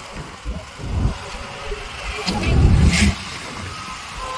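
A car driving along a road, heard from inside: road and engine rumble that swells louder between two and three seconds in.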